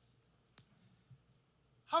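A pause in a man's speech: quiet room tone broken by a single short, sharp click about half a second in, then his voice starts again near the end.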